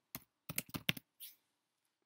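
Computer keyboard being typed on: a quick run of about half a dozen keystrokes in the first second, then stillness.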